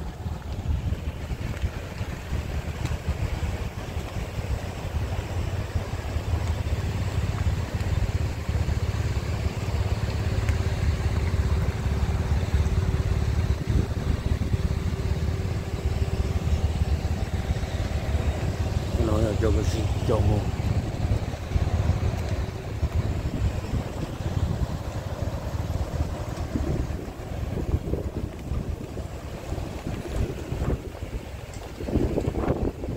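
Wind rumbling on the microphone over slow-moving vehicles, with a steady engine hum through the middle and a brief wavering pitched sound about nineteen seconds in.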